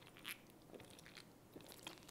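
Very faint sounds of a person drinking from an aluminium can: a few small scattered clicks and sips, barely above room tone.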